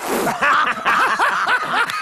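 A performer laughing: a brief breathy rush, then a rapid run of short 'ha-ha' bursts, about six a second.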